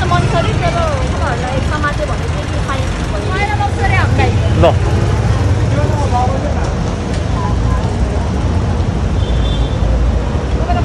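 Motorcycle engines of sidecar tricycles running in street traffic, a steady low rumble, with people's voices chattering over it.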